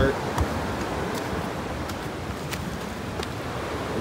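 Steady rushing of water, with a few light clicks and crunches of footsteps on leaf-littered rock.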